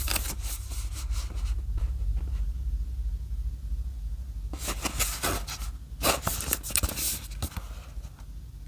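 A cardboard product box handled and turned over in the hands, its surfaces scraping and rustling briefly at the start and again in a run of rustles from about halfway to near the end, over a low rumble.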